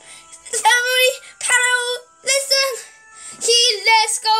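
A child's high voice singing a few short held notes in bursts, with faint steady background tones beneath.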